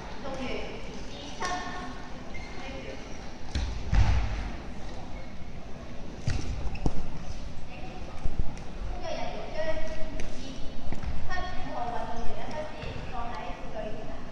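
Background chatter in a large sports hall, with a few dull thumps, the loudest about four seconds in and another around six to seven seconds.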